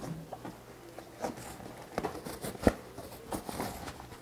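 Vinyl spare tire cover being tugged and worked around a tire by hand: rustling handling noise with a few soft knocks, the loudest a short thump about two and a half seconds in.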